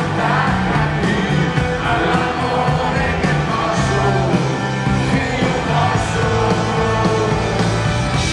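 Live rock band playing loudly, with electric guitars, bass and drums and singing over them, heard from among the audience.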